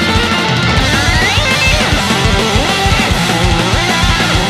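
Skate-punk band recording: loud, dense electric guitars over a steady driving beat, with a rising melodic line about a second in.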